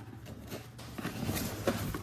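Cardboard shipping box being opened by hand and a boxed part lifted out: the cardboard rustles and scrapes, with a few short knocks.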